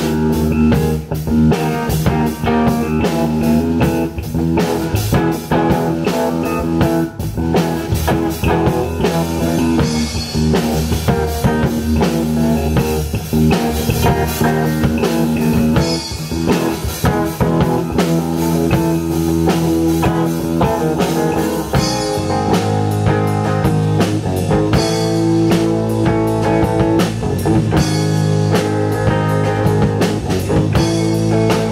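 A live rock band playing an instrumental passage: electric guitar, bass guitar and drum kit together. About two-thirds of the way in the bass line shifts and the band moves into a new section.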